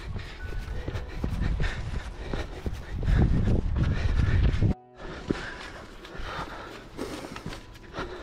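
A trail runner's footsteps thudding in a steady rhythm on grass, with wind buffeting the microphone and growing heavy for a second or two before the sound cuts out briefly about five seconds in.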